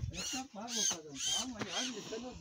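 Short wordless voice sounds, each rising and falling in pitch, coming about twice a second.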